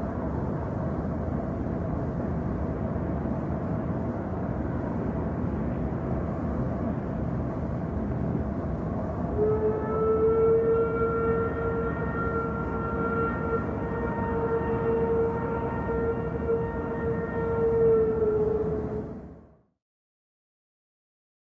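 A dense low rumbling drone, joined about halfway through by a single steady horn-like tone with overtones that holds for about ten seconds; both fade out quickly just before the end.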